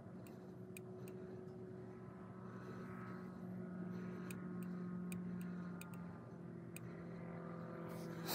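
Steady low hum of a vehicle running, heard inside the cab, with its pitch shifting slightly a few seconds in. Scattered light ticks sound over it.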